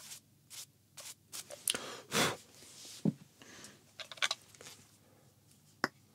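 A small brush sweeping over the body of a Canon DSLR, a series of short scratchy strokes with the loudest swish about two seconds in. A sharp click near the end.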